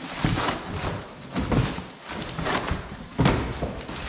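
Cardboard packaging being torn and pulled off crated parts: a series of irregular rips, rustles and thumps of cardboard, the loudest about three seconds in.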